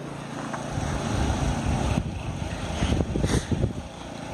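Wind buffeting the microphone in irregular low gusts, heaviest in the second half, over the steady low hum of a lawn mower engine running.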